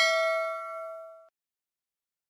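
Notification-bell sound effect: a bright bell ding of several ringing tones that fades and stops about a second and a quarter in.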